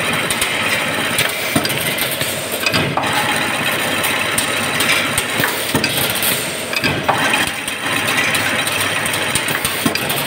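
Chain link mesh making machine running, spiralling and weaving galvanized iron wire into fencing mesh: a steady mechanical clatter with repeated sharp metal knocks.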